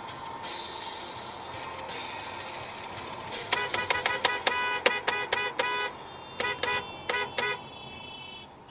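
Car horn honked in rapid short blasts, about five a second, in two runs, the first starting about three and a half seconds in and the second shortly after, over steady road noise.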